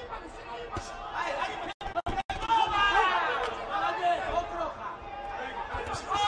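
Several people's voices talking and calling out over one another, with no words clear enough to transcribe. The sound drops out three times, very briefly, about two seconds in.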